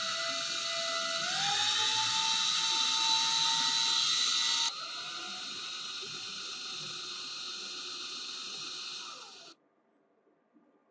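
Power drill running with a hacksaw blade pressed against a metal pin spinning in its chuck, the blade scraping into the metal with a high hiss over the motor's whine. The motor's pitch steps up about a second in, the sound drops sharply in level about halfway, and it all stops abruptly near the end.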